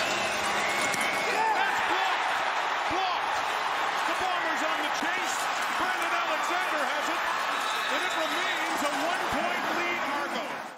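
Football stadium crowd cheering and shouting, a dense, steady mass of many voices heard through the TV broadcast sound.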